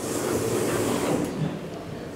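An elevator's automatic sliding doors opening: a steady rolling noise that dies away about a second and a half in.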